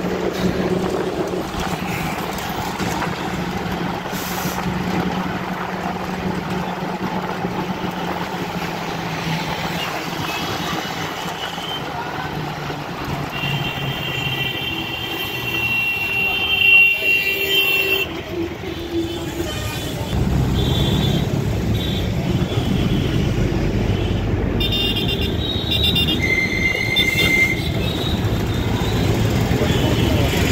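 Traffic noise heard from inside a moving bus: the bus's engine and road noise run on steadily, and vehicle horns toot several times from about a third of the way in. The low engine rumble grows louder about two-thirds through.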